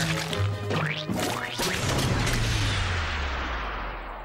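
Cartoon soundtrack music, then a loud crash sound effect about a second in, its noise dying away slowly over the next few seconds.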